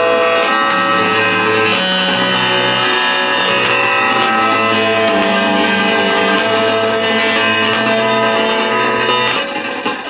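Solenoid lyre, an electric prototype lyre, heard through its single-coil pickup. It plays a continuous, shifting chord of sustained string notes as its solenoid dampers lift and drop, over the amplified noise of its fan. Sharp clicks are scattered through it, typical of the crackling from its solenoids and micro switches, which still lack suppression diodes.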